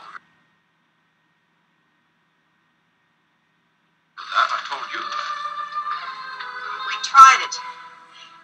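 Film clip soundtrack cut to dead silence for about four seconds while a timed pause event holds playback. The soundtrack then resumes with music and a sharp loud moment about three seconds later.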